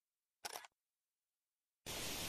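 Near silence broken by a brief click about half a second in, then a steady hiss of recording noise that starts just before the end.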